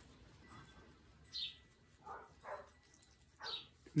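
A dog barking faintly, a few short barks spread across the few seconds.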